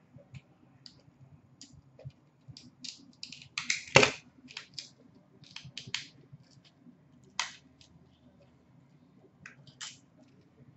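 Trading cards and their packs being handled on a glass counter: scattered light clicks and rustles, with a quick flurry and one sharp click about four seconds in, and another snap a few seconds later.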